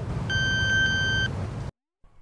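Bluefang 5-in-1 dog training collar giving a single steady electronic beep, about a second long with a few overtones. This is the collar's warning tone that the dog is nearing its electric-fence boundary. Under it runs a low rumble that cuts off abruptly near the end.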